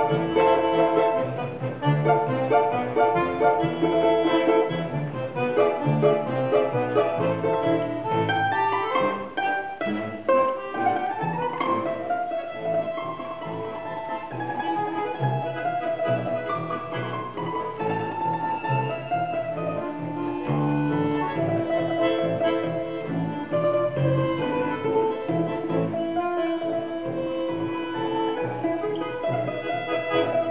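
A Russian folk trio of domra, bayan and contrabass balalaika playing an old Russian march: a plucked melody over button-accordion chords and low balalaika bass notes. The playing grows somewhat softer about twelve seconds in.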